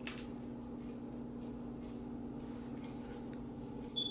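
Steady low hum of room tone, with a few faint small clicks and taps as a knife cuts through a soft African violet leaf stem on a table and the leaf is set down, the sharpest tap near the end.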